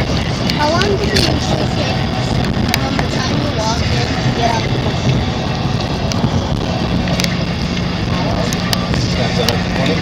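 Steady road noise of a car driving at highway speed, heard from inside the cabin. A low steady hum joins in about seven seconds in.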